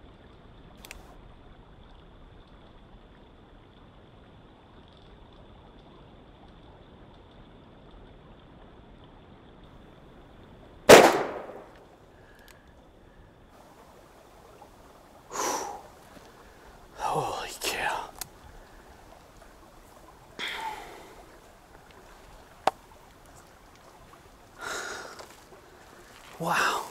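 A single loud shot from a Smith & Wesson 629 Stealth Hunter .44 Magnum revolver about eleven seconds in, after a long hush, dying away quickly. Afterwards come several short bursts of heavy breathing and whispering from the shooter.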